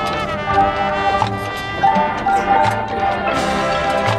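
Marching band playing: sustained brass chords from trumpets and other horns over low sousaphone bass notes, punctuated by repeated drum hits.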